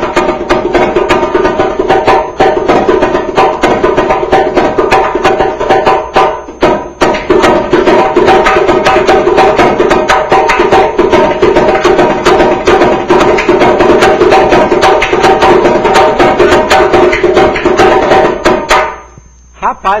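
Repinique, the high-pitched samba lead drum, played solo with a stick in fast, dense rhythmic patterns, the head ringing on each stroke. The playing breaks off briefly about seven seconds in, picks up again and stops shortly before the end.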